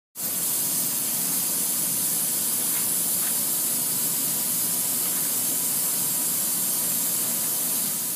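Steady high-pitched hiss from a Northwood Model 58E CNC router running, with a faint steady tone underneath.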